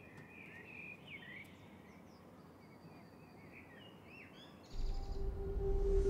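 Faint outdoor ambience with small birds chirping in quick, curving calls. About two-thirds of the way in, a loud low swell with a steady hum starts suddenly and keeps rising to the end: a film transition sound effect building into music.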